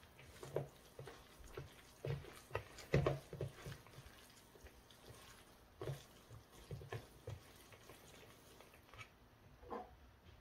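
Faint, irregular wet squishing and patting of chwinamul (wild aster greens) dressed with doenjang and gochujang paste, kneaded by a gloved hand in a plastic mixing bowl; the loudest squelch comes about three seconds in.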